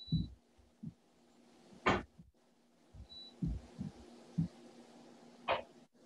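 Kitchen items being handled and set down on a counter: several short, soft thumps and two sharper knocks, the first about two seconds in and the second near the end, over a faint steady hum.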